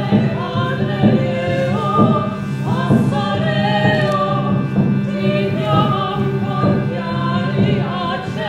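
Operatic vocal music: voices singing a melody over a steady low drone.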